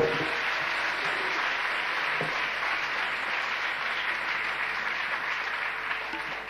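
Audience applauding steadily after the music ends, with a sharp thump right at the start.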